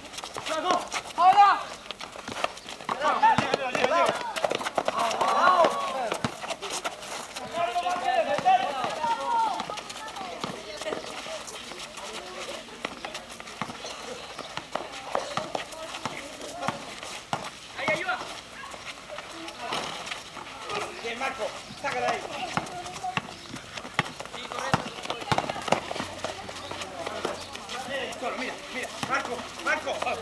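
Basketball players calling and shouting to each other during a game on an outdoor concrete court, the voices loudest in the first ten seconds. Through them run scattered knocks and footfalls of the ball and running feet.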